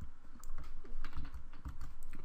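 Computer keyboard keystrokes: a few irregular clicks mixed with dull low knocks.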